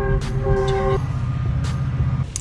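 A train horn sounds one steady blast of about a second, several tones held together as a chord, heard from inside a car over the low rumble of the cabin.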